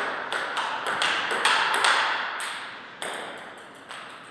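Table tennis rally: the ball clicking off paddles and table in a quick run of sharp ticks, about three or four a second, which thin out to two single ticks in the last second or so.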